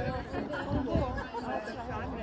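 Voices of several people chatting in the background, over a low rumble of wind on the microphone.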